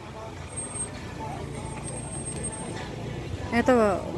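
Motor vehicle engine running close by with a low, steady rumble.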